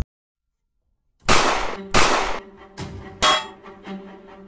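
Metallic clang and crash sound effects of a robot being struck down. After a second of silence come two loud ringing hits close together, then two lighter clanks, the last with a ringing tone, over a low hum.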